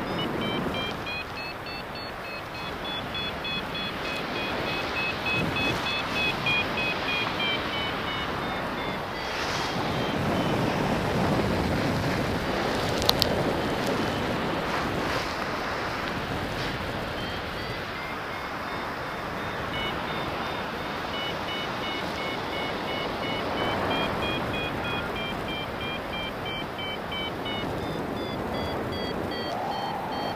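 Paragliding variometer beeping in quick, evenly spaced pulses, its pitch stepping up and down with the rate of climb: the climb tone of a glider in light lift. The beeping drops out for several seconds in the middle and then resumes. Steady wind rushes over the microphone, with one sharp click partway through.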